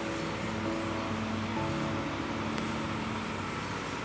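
Soft instrumental backing track playing held notes, with no singing.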